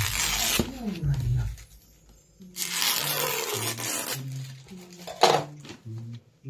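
Crinkling of foil wrapping paper and ribbon being pulled as a bow is tied on a gift, in two longer rustles and a short one near the end, over background music with steady low notes.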